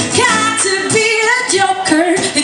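Woman singing live into a microphone, accompanied by two strummed acoustic guitars.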